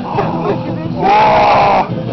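People talking, then a loud, high-pitched, drawn-out vocal cry from one person lasting under a second, starting about a second in.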